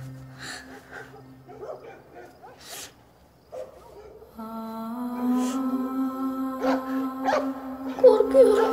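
A young boy crying quietly, with short sniffles and sobs, over soft background music. One held note fades out at the start, and a new sustained low note comes in about halfway through.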